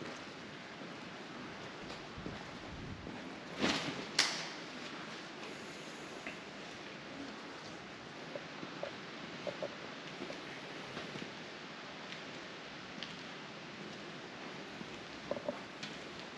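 Steady low hiss of room tone in a large hall, broken by two short rustles about four seconds in and a few faint scattered taps.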